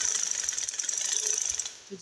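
Sewing machine running fast, its needle stitching a seam through gathered fabric in a rapid, even rattle that stops shortly before the end.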